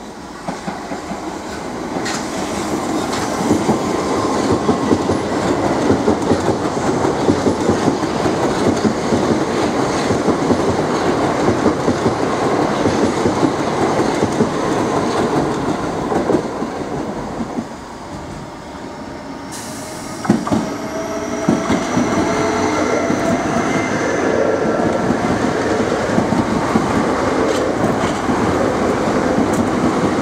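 Southeastern electric multiple-unit trains passing through the station: steady rolling noise with wheels clattering over rail joints, first from a Class 465 Networker. About twenty seconds in, a second train comes in suddenly and close, and a whine from its electric traction equipment rises gently in pitch as it goes by.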